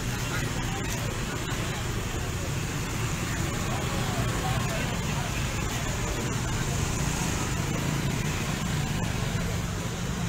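A string of small motorcycles and scooters riding past, their engines running in a steady mix, with a crowd talking in the background.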